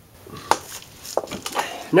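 A few sharp knocks and clicks, the loudest about half a second in and another a little after a second, then a man's voice begins at the very end.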